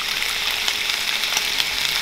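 Beef stew meat searing in a pan on high heat: a steady sizzle with a few faint crackles.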